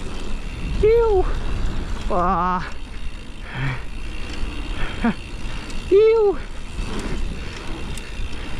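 Wind rushing over the ride camera's microphone and mountain-bike tyres rolling over a gravel trail, coasting without pedalling. A few short wordless vocal sounds from the rider rise and fall about one, two, five and six seconds in, one of them wavering.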